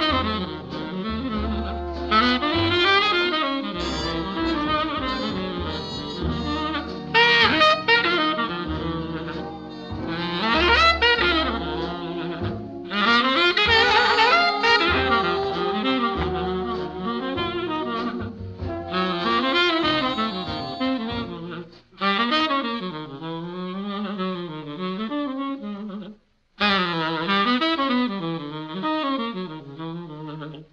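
Tenor saxophone playing a slow jazz ballad melody with a wavering vibrato, over a low bass accompaniment. About two-thirds of the way in the bass drops away and the saxophone carries on alone, with brief pauses between phrases.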